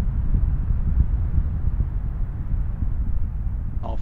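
Deep, steady rumble of a space shuttle's ascent, its twin solid rocket boosters and three main engines still firing.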